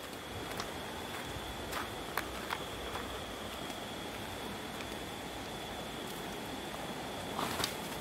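Footsteps of people walking on a concrete path and footbridge, a few scattered steps with a louder cluster near the end, over a steady rushing background and a constant thin high whine.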